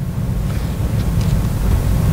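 Steady rushing, rubbing noise on the microphone, the kind made by clothing or handling against a clip-on mic as the wearer moves.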